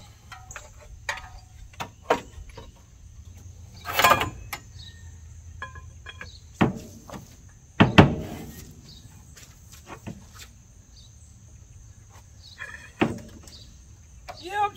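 A ratchet with a long steel pipe over it, used as a cheater bar, clanks and clicks on the crankshaft bolt of a seized 1964 Ford 390 FE V8 as it is heaved on; the engine does not turn. There are a few sharp metal knocks, the loudest about halfway through with a short ring, over steady insect chirping.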